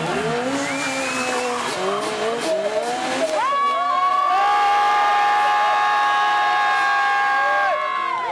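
Stunt sport-motorcycle engines revving in rising and falling sweeps. About three seconds in, a loud, steady, high-pitched note starts, is held for over four seconds and cuts off just before the end.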